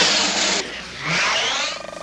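Cartoon sound effects: a loud hissing blast that cuts off sharply about half a second in, then a warbling, sweeping sound and a short rapid buzz near the end.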